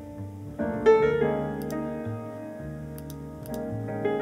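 Playback of a mixed recording: piano chords over a low bass line, with a loud new chord struck about a second in.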